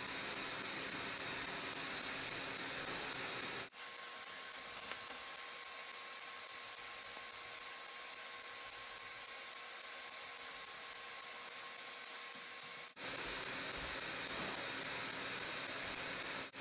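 Faint, steady hiss of room tone with no distinct events. It drops out briefly about four seconds in and again near thirteen seconds, where the recording is cut. Between the cuts the hiss is thinner and higher, with a faint steady hum under it.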